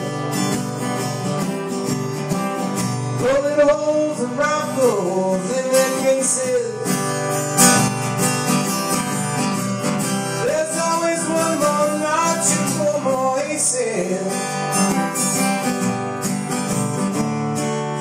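Steel-string acoustic guitar strummed and picked in a solo folk-rock performance, with a man's voice singing over it in two stretches.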